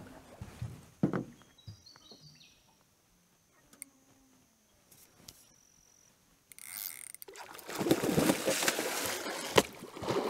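A barramundi strikes a surface lure and thrashes on the water. The loud splashing starts about six and a half seconds in, after several near-quiet seconds, and keeps going.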